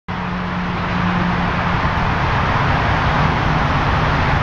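Steady road traffic noise with a low engine hum that steps down slightly in pitch about one and a half seconds in.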